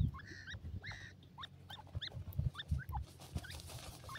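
Grey francolins giving short, soft squeaky chirps, several a second, over dull low thumps. Near the end a rustle of dust and fluttering wings comes in as a bird dust-bathes.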